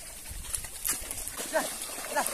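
Cattle wading in a shallow river, with light water noise, a sharp click about a second in and a few short faint calls.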